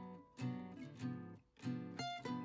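Background music: acoustic guitar picking and strumming chords in a steady rhythm, with a brief drop-out a little past the middle.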